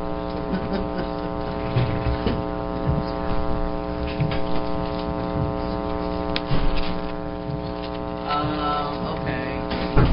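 Steady electrical mains hum, a buzz made of many even tones, with a few faint knocks and distant murmuring.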